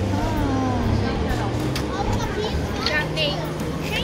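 Young children's voices talking and calling out, with high squeals near the end, over a low steady machine hum.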